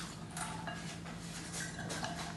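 Quiet room tone: a faint steady low hum with a few soft brushing noises.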